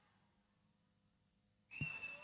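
Near silence. Near the end a low thump comes, and a high, steady whistling tone sets in.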